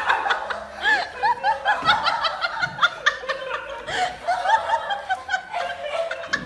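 High-pitched laughter, a quick run of short giggles repeating throughout.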